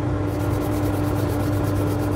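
Wood lathe running with a steady hum while sandpaper is held against the spinning oak handle. From about a third of a second in there is a rasping sanding sound with a fast, even pulsing.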